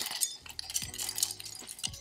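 Ice cubes clinking against the inside of a copa gin glass as a long bar spoon stirs them round, chilling the glass. The clinks come quickly and irregularly.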